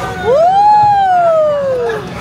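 A single long, high-pitched vocal cry, rising quickly in pitch and then sliding slowly down over more than a second; it is louder than the talk around it.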